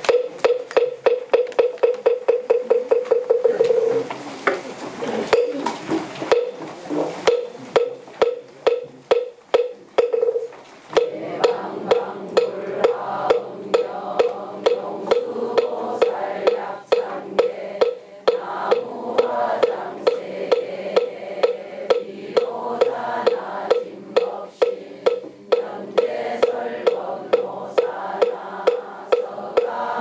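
Moktak (Korean Buddhist wooden fish) struck in a fast run of strokes for the first few seconds, then a few scattered strokes. From about eleven seconds it keeps a steady beat of about two strokes a second for a congregation chanting a sutra in unison.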